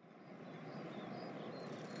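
Faint outdoor street ambience fading in: a steady background hiss with a few faint high chirps.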